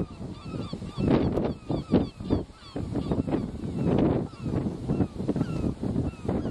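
Birds calling over and over in short, falling cries, several a second, with wind gusting on the microphone.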